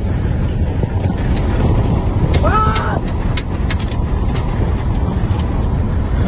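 Car interior noise while driving: steady low engine and road rumble heard from inside the cabin, with a brief voice-like call about two and a half seconds in.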